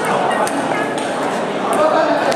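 Table tennis balls clicking against bats and tables, short sharp ticks at irregular intervals overlapping from several games at once, over the steady chatter of many voices in a large sports hall.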